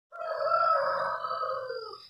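A rooster crowing: one long crow, sinking slightly in pitch and fading toward the end.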